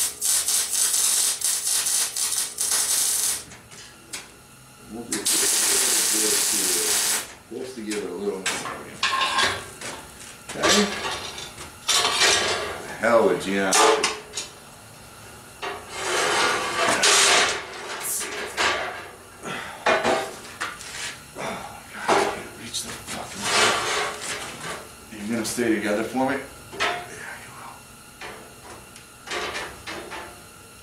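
Electric arc welder crackling and hissing through two short tack welds on steel bar, about three seconds and then two seconds long. After that come clanks and knocks of steel bars being handled and moved on the welding table.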